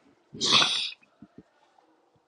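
A single sneeze close to the microphone, one sharp burst about half a second long shortly after the start, with a few faint low taps after it.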